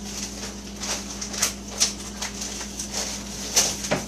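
White paper crinkling and rustling in short, irregular crackles as it is folded over a seasoned raw ground-beef patty.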